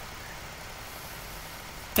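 Steady background noise of the recording: a low hum with an even hiss, with no distinct events. A spoken word begins right at the end.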